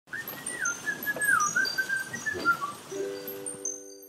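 Logo intro jingle: a bending, whistle-like melody over a noisy bed, giving way about three seconds in to a held chord, with high chime tinkles starting near the end.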